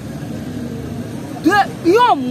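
Steady low hum of street traffic, with a woman's voice breaking in with two short syllables near the end.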